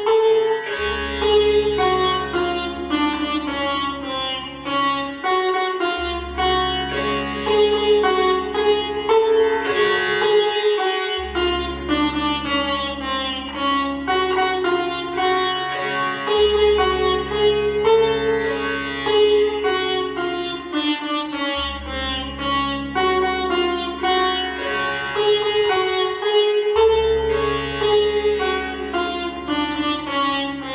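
Sitar music: quick plucked melody notes over a sustained drone, with a deep low note re-sounding about every five seconds.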